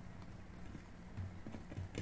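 Close-miked chewing of a mouthful of rice: soft rhythmic mouth sounds with light wet clicks, a little louder in the second second.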